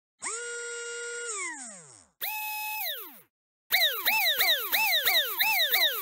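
Electronic intro sound effects: a held buzzy tone that slides down in pitch and dies away, then a shorter, higher one that does the same. About two thirds of the way in, a quick run of falling swoops follows, about three a second.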